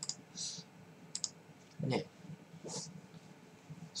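A few short, sharp clicks and two brief soft hisses, with a short spoken word about halfway through.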